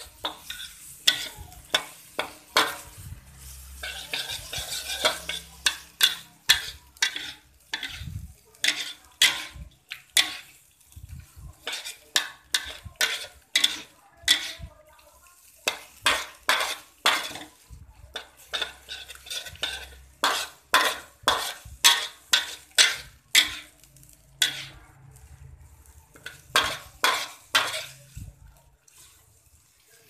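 A spatula scraping and knocking against a frying pan as fried octopus and squid are stirred through chili sambal, with a sharp scrape about once or twice a second. There is a light frying sizzle in the first few seconds.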